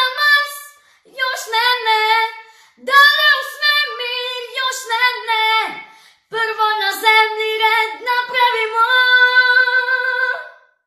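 A young girl singing solo and unaccompanied in four phrases with short silent rests between them. The last phrase ends on a long held high note near the end.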